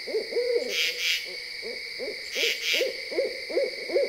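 A run of short owl hoots, coming quicker toward the end, over steady chirping of crickets.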